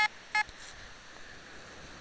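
Fisher F22 metal detector giving two short electronic beeps less than half a second apart, the second shorter. The signal is breaking up to the iron tone, so the target reads as iron.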